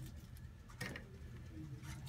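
Quiet room tone: a steady low hum, with one soft click a little under a second in.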